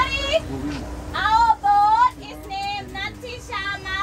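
High-pitched voice calling out in a sing-song way, loudest in the middle, over a steady low hum.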